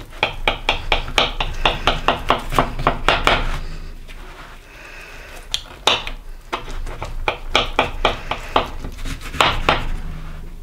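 A knife cutting through a baked quiche in an aluminium foil pie pan, in quick sawing strokes of about five a second that click and scrape against the crust and the foil. There is a pause in the middle, then a few single strikes and a second run of strokes.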